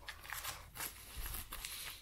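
Faint rustling and handling noise of a fabric first-aid pouch and its packaged contents being moved about in the hands.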